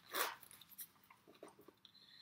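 A short crinkly rustle about a quarter second in, then a few faint ticks and rustles, as hands handle banknotes and a small pouch at the opening of a leather handbag.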